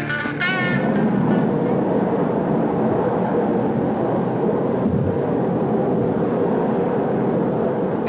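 Steady, dense mechanical rumble with a faint even hum, a cartoon sound effect for a garbage incinerator plant running. A short guitar music cue cuts off just before it sets in.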